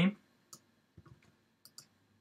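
A handful of short, faint clicks from a computer mouse and keyboard as a line of code is selected and copied.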